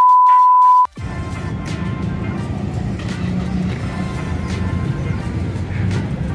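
A TV test-tone beep, one steady pure tone lasting about a second at the start, played under colour bars as a video transition effect. It cuts off suddenly and gives way to steady background music.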